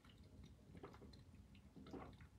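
Near silence with a few faint sounds of sipping and swallowing as a drink is taken from an insulated tumbler.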